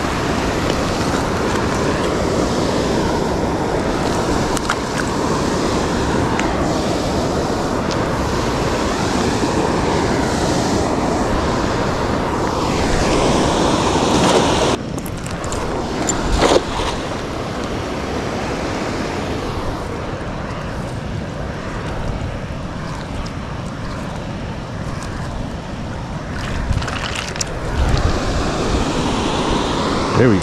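Wind buffeting the microphone over the steady rush of a waterfall, with a cast net splashing down onto the river about halfway through.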